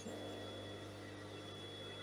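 Faint room tone: a steady low hum with a thin, high, steady whine, and no machine stitching.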